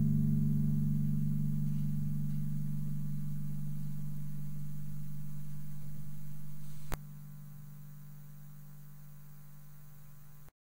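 Low, steady hum from electric guitar and bass amplifiers left sounding after the song's final chord, slowly fading. A sharp click about seven seconds in drops it to a quieter hum.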